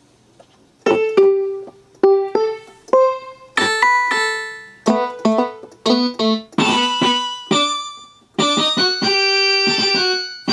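Yamaha PSR-172 portable keyboard played by hand through its built-in speakers: after about a second, a melody of struck notes that each die away, and near the end notes held at a steady level.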